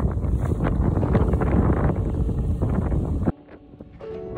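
Heavy wind buffeting a phone microphone on the open deck of a moving ferry, a dense low rumble. A little over three seconds in it cuts off suddenly to a much quieter background.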